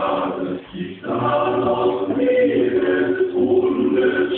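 Young men's voices singing a comic German song together, loud and rough with drawn-out notes, and a brief break just before a second in.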